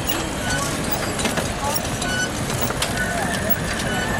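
A large group of cyclists riding together: a steady rolling rumble with the chatter and calls of many riders mixed in, and scattered short high chirps and ticks from the bikes.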